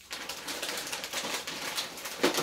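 Rustling and crinkling of grocery packaging being handled, a dense crackle that starts abruptly.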